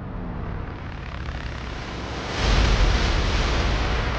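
A loud, noisy rumble with a deep low end that swells louder a little past halfway.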